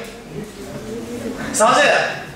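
Speech: a man talking, quieter through the first second and a half, then louder near the end.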